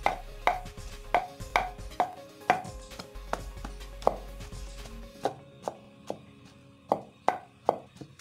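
A pestle pounding boiled yam in a mortar, making the yam thickener for white soup. There are sharp knocks about two a second, each with a short ring, coming less regularly and a little lighter in the second half.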